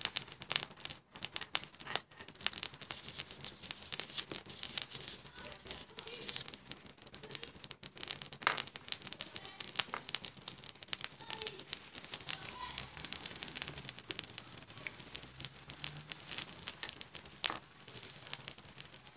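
Homemade cotton fire starters burning, crackling and sputtering continuously in a dense stream of small pops.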